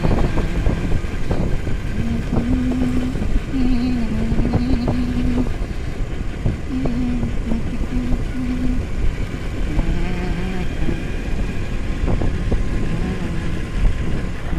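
Steady engine and wind rumble of a motorbike being ridden along a road. The engine note rises and falls in steps several times.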